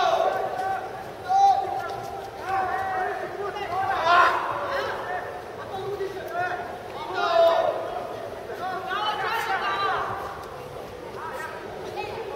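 Indistinct voices calling out across a large arena hall over a background of crowd murmur, with several louder calls.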